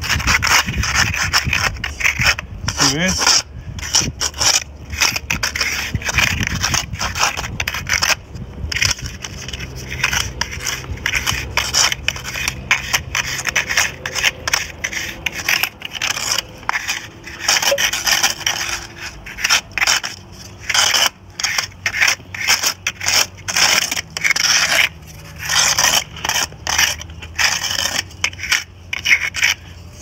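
A nail set in a small wooden board scraping through fresh mortar joints between bricks, raking them out in many short, repeated scraping strokes.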